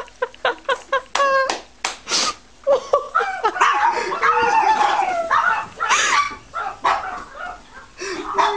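Small dog barking: a quick run of short, high yips in the first couple of seconds, then longer wavering yelps and whines.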